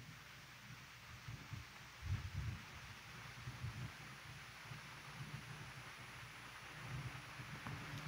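Faint room tone: a steady low hiss with a few soft, low rumbles, the loudest about two seconds in.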